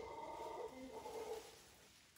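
A faint animal call, one held tone with overtones lasting about a second and a half, fading out after about a second and a half.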